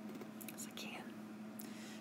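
Faint room tone with a low steady hum and soft breath noise; a breath is drawn near the end.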